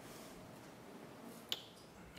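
Quiet room tone in a meeting chamber, with a single sharp click about a second and a half in.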